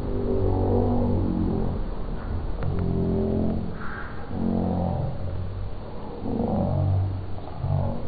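Boys' voices making drawn-out vocal sounds in a string of phrases about a second long each.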